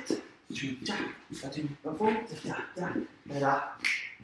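A man's voice quietly vocalising the beat in a string of short syllables, keeping time for the dance in place of music.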